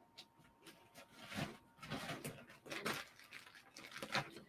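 Faint, scattered rustles and soft knocks of small items being handled, as a jewelry piece is moved into its packaging sleeve.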